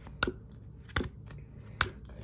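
Playing cards being dealt one at a time into two piles on a table, each card giving a sharp snap; three snaps evenly spaced with fainter ticks between.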